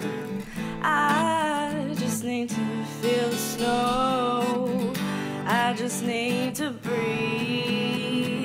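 An acoustic guitar being played under a voice singing long held notes with a slow vibrato, several separate phrases, as one song.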